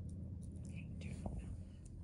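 Quiet room tone: a steady low hum with a faint breathy hiss and a couple of soft clicks.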